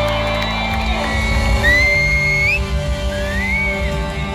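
Live reggae band with a horn section of two saxophones and a trumpet over bass and drums, heard loud from within the audience. A shrill whistle cuts over the music twice, each time rising in pitch.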